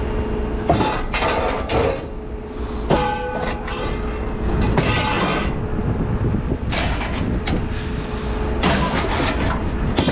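Scrap metal being shifted by hand in a pickup bed: metal conduit pipes and other scrap clanking and scraping against each other in irregular bursts, some clangs ringing briefly, clearest about three seconds in, over a steady low rumble.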